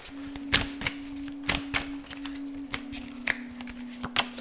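Tarot cards being shuffled and handled: a run of quick, irregular card flicks and taps. A faint steady hum runs underneath and drops slightly in pitch partway through.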